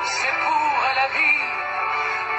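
A song playing: a sung vocal line gliding between notes over steady instrumental accompaniment.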